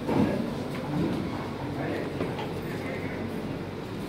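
Crowd noise: many voices talking over one another, with a brief louder burst just after the start.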